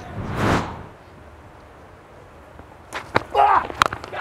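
A broadcast swoosh transition effect, a short rising-and-falling whoosh in the first second. Then faint ground ambience, and near the end a few sharp knocks, the last as the bat strikes the ball.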